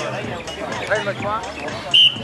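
Men's voices calling out "yalla, yalla" (Arabic for "come on") during a beach volleyball game. Right at the end comes a short, high whistle blast, the loudest sound, typical of a referee whistling for the serve.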